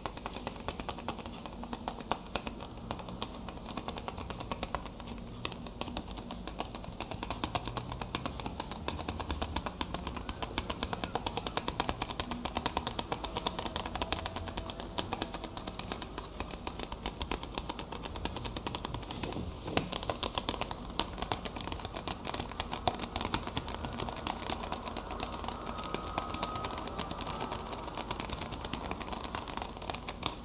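Rapid, continuous fingertip tapping on a small hard handheld object, a dense run of light clicks.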